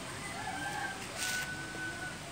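A rooster crowing, one long held call in the second half, with a short scrape of soil being scooped and dropped by hand about a second in.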